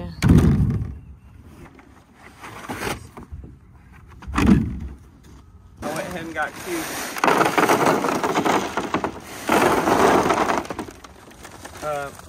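Two dull thumps from handling the black plastic feed-trough liner on the ground. Then 14% cattle cubes and a grain feed blend poured from a paper sack into the plastic trough, a rattling rush of pellets in two long pours.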